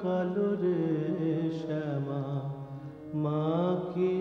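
A voice singing a devotional song to the goddess Kali, in long held notes that bend and slide in pitch, with a brief break about three seconds in.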